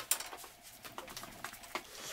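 Quilted bedspread being pulled up over a bed and smoothed by hand: soft fabric rustling with scattered light clicks and taps.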